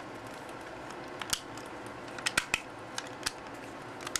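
Small plastic clicks of a Transformers Human Alliance Sideswipe toy as its parts are pushed and clipped into place by hand: a few scattered sharp clicks, three of them in quick succession midway.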